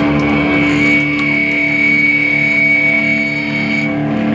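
Loud live band music, led by electric guitar holding long sustained notes over a pulsing low rhythm.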